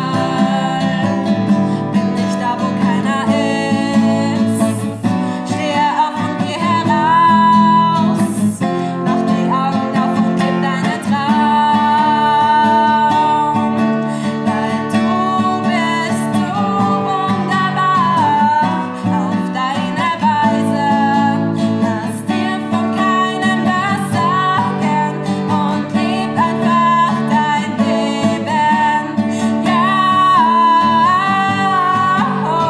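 A young woman singing over her own strummed nylon-string classical guitar.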